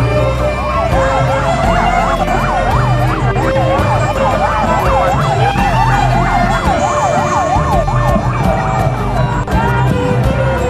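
A siren yelping, its pitch sweeping up and down quickly, about two to three times a second, and fading out near the end. Music and a low pulse carry on underneath.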